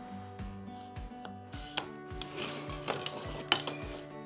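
A hand glass cutter scoring a strip of glass along a straightedge: a scratchy rasp that starts a little before halfway and runs on, with a sharp click near the end. Background music with a steady beat plays underneath.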